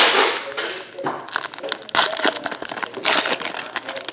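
Foil trading-card pack wrapper being crinkled and torn open by hand, in crackling bursts: a loud one at the start, then more about two and three seconds in.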